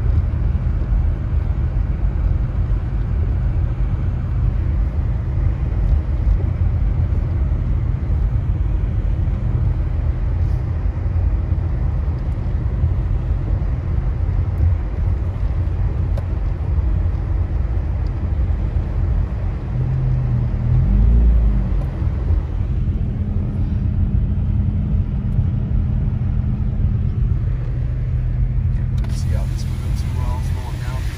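Steady low rumble of a car driving on a snowy road, tyres and engine heard from inside the cabin. A low steady hum joins in about two-thirds of the way through.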